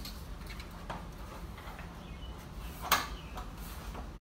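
Faint clicks and knocks of a car side skirt being pressed onto its mounting clips along the rocker panel, with one sharper click about three seconds in.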